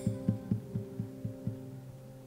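Closing bars of live band music: a soft low pulse of about four beats a second over a held low drone, the beat stopping about a second and a half in while the drone lingers.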